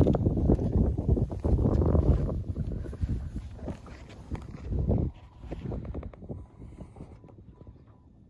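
Wind buffeting the microphone, with water lapping and knocking against the skiff's hull. It is loud for the first few seconds and dies down after about five seconds.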